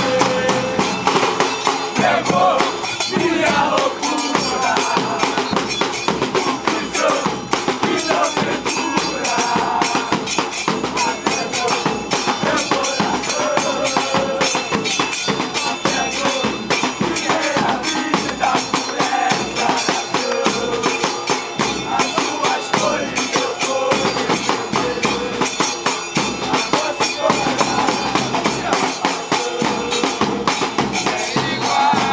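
A supporters' group chanting in unison in the stands over fast, steady drumming from the group's own drums.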